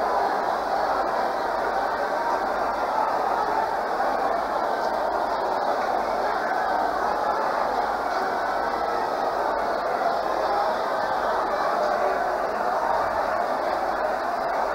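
A congregation praying aloud all at once: a steady babble of many overlapping voices in which no single voice stands out.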